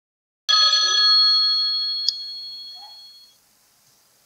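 A mobile phone ringtone: a single bright, bell-like chime starting suddenly about half a second in and ringing away over about three seconds, with a short click partway through.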